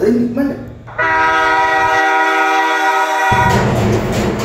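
A train horn sounds one long, steady blast of several tones at once, starting about a second in and stopping a little after three seconds. After it comes a broad rushing noise. Pop music with a sung voice plays in the first second.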